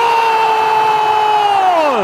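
A football commentator's long goal shout, held at one high pitch and then dropping away near the end as his breath runs out, over the noise of a cheering stadium crowd.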